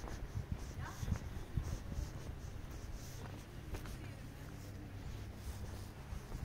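Footsteps of someone walking on paved ground at about two steps a second, over a steady low rumble of wind on the microphone.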